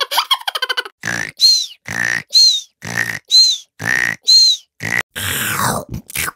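An animal grunting over and over, about once a second, with a short high squeaky whistle after each grunt, five times in a row.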